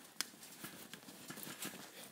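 Faint handling sounds as soft toys are placed among blankets: light rustling with a small sharp click about a quarter second in and scattered soft ticks after it.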